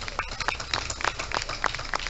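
Scattered applause from a small group: irregular, individually distinct hand claps.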